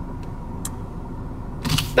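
Steady running hum inside a parked car's cabin, with two faint clicks in the first second.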